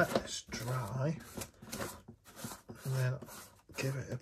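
A man's voice speaking in short stretches, the words unclear, with brief pauses between them.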